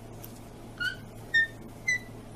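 Three short high-pitched squeaks about half a second apart, each a little higher than the last.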